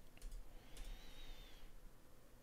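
A few faint clicks of computer input near the start, picked up over a video-call microphone, then a faint thin high tone that wavers slightly for under a second.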